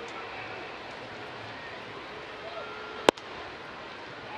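A single sharp pop of a fastball landing in the catcher's mitt for a strike, about three seconds in, over the steady murmur of a ballpark crowd.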